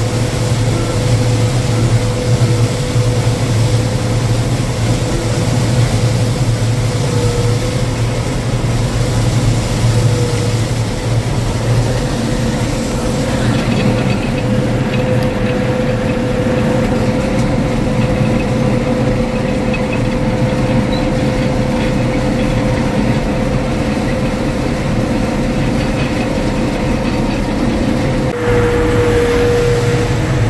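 Gleaner M2 combine running under load while cutting soybeans, heard from inside the cab: a steady low drone with a thin, constant whine over it. The sound turns slightly duller about halfway through and louder again near the end.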